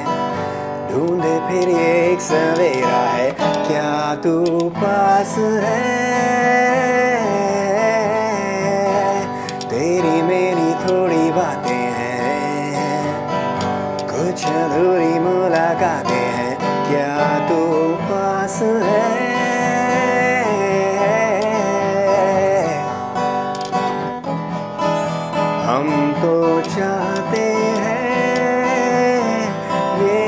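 A man singing a Hindi song while strumming an acoustic guitar.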